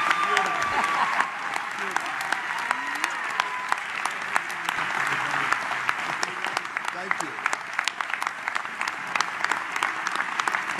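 A large banquet audience applauding, dense, sustained clapping that holds steady throughout.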